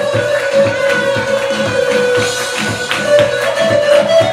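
Loud dance music with a fast, steady beat of about four strokes a second under a sustained melody line.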